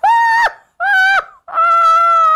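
A woman's high-pitched, drawn-out laugh: three long held notes, each a little lower than the one before.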